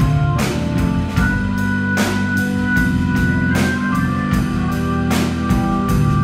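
Live rock band playing: sustained Hammond organ chords over a steady drum-kit beat with guitar.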